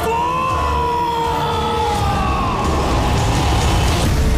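A man's long, drawn-out scream, held for about two and a half seconds with its pitch slowly falling and then fading, over a film music score with a steady low rumble.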